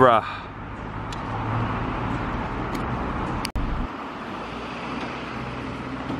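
Steady outdoor background noise with a low rumble and a few faint clicks, broken by an abrupt cut about three and a half seconds in.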